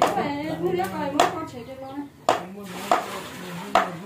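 A meat cleaver chopping meat on a wooden chopping block: four sharp strikes at uneven intervals, the first about a second in and the rest in the second half.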